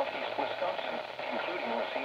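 NOAA Weather Radio broadcast voice from a Capello weather radio's small speaker, tuned to 162.450 MHz. The voice is faint and mixed with steady static hiss, the sound of a weak, distant station (Racine, Wisconsin) picked up on the new external antenna.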